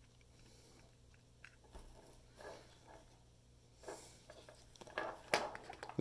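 Faint scattered clicks and rustles of small plastic servo connectors and wires being handled and pushed onto a radio-control receiver's pin header, the loudest a little after five seconds.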